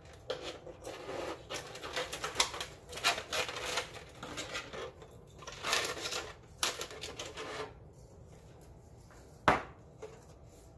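Clear plastic film crinkling and crackling in irregular bursts as hands handle it and pull it off a 3D-printed skull, for about eight seconds. Then one sharp knock near the end.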